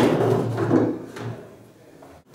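A sharp knock and a brief scrape of a classroom chair being moved against the floor and table, fading within about a second.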